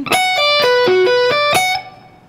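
Electric guitar playing the top portion of a B minor sweep-picking arpeggio lick, mixing picked notes, pull-offs and sweeps. About seven single notes step down the arpeggio and climb back up to the top note in about a second and a half, and the last note is left ringing.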